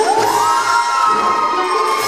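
Spectators cheering over the routine's music, with one long high call that rises at first and then holds.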